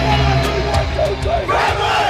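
Rock music with a heavy bass line that drops out about a second in. A group of men then shout together in a team cheer.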